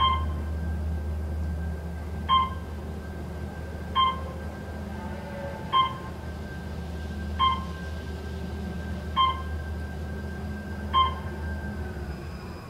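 Otis Series 2 traction elevator: a short electronic beep about every one and three-quarter seconds, seven in all, over a steady low hum and a faint steady whine, as the car travels up to floor 9.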